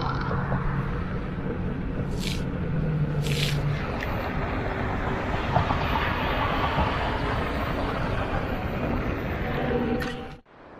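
Inmotion V10F electric unicycle rolling along an asphalt path, with steady wind and tire noise on the rider's microphones. A low hum fades out about four seconds in, and two brief hisses come around two and three seconds in.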